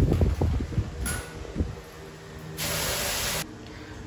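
Kitchenware knocking and clattering at a sink for about the first second, then quieter. Near the end comes a short, steady hiss of under a second that starts and stops abruptly.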